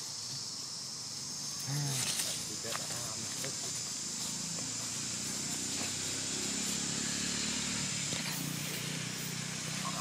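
Steady high-pitched buzzing of insects in dry woodland, with a few crackles of dry leaves being disturbed around two seconds in and again near the end, and a faint low murmur of voices in the background.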